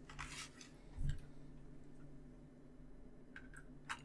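Faint clicks and light scraping of a small screwdriver working a screw in the plastic parts of a model car kit, with a short click about a second in and a couple more near the end.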